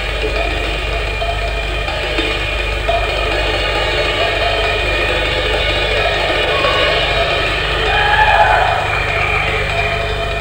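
Drum kit solo: fast, unbroken rolls around the drums under washing cymbals, swelling slightly about eight seconds in. It comes from an old, low-quality tape recording.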